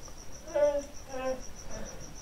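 A cricket chirping, a steady high trill pulsing about five times a second, with two short faint voice-like sounds about half a second and a second in.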